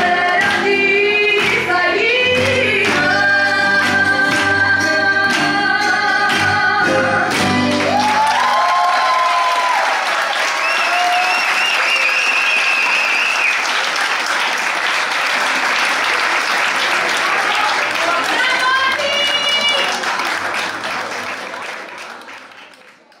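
A Greek song with singing and a beat plays for the first eight seconds or so and stops. Audience applause with cheering voices follows, fading out near the end.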